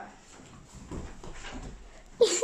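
Soft footsteps and scuffling of children running across a carpeted floor, faint and uneven.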